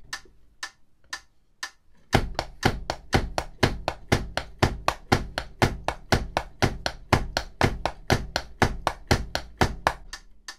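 A metronome clicking about twice a second. About two seconds in, drumsticks start tapping a fast, steady pattern in time with it, with a low thud from the foot on each metronome beat.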